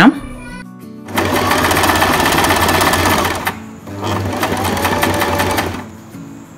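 Singer electric sewing machine running in two spells of about two seconds each, with a brief stop between them, the needle stitching at a rapid even rate.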